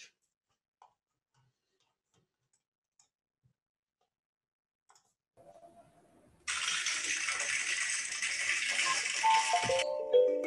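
Applause over the call audio: a dense clapping that starts suddenly after several seconds of near silence and sounds like rain. Near the end a few descending, chime-like notes come in.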